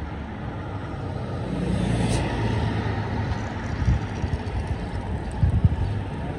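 Street traffic: a steady low rumble of road vehicles that swells as a car passes about two seconds in, with a few short low thumps near the end.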